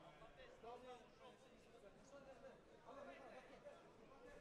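Faint, indistinct voices of people talking in the background, low under near-silence.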